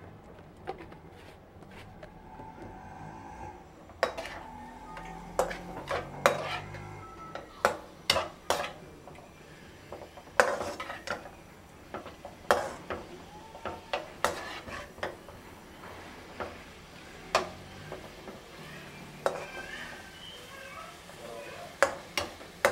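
Steel slotted spatula knocking and scraping against a metal wok as cubes of chicken are stirred and sautéed. The strikes are irregular, a second or two apart.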